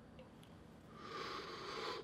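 Near silence, then about a second in a faint, breathy hiss of a person drawing a long breath in through the mouth, lasting about a second.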